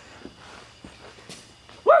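A person's cheering whoop, "woo", near the end, rising and then falling in pitch. Before it there are only a few faint scattered taps.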